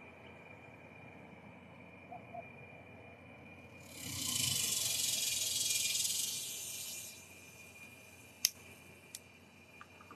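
A long hiss of breath as smoke is blown out, starting about four seconds in and lasting about three seconds. Under it runs a faint steady high whine, and two sharp clicks come near the end.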